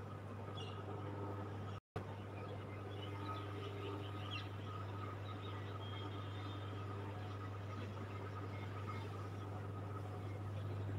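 Outdoor ambience: a steady low hum with faint bird chirps, a few of them about three to four seconds in. The sound cuts out for a split second just before two seconds in.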